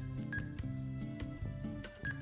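Quiet background music with low held notes that change in steps, and one short high beep about a third of a second in: a key-press tone from the TidRadio TD-H8 handheld as a new frequency is keyed in.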